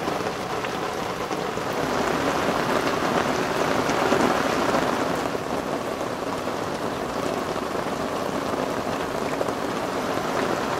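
Steady rain falling on the river and the boat, growing louder for a few seconds about two seconds in.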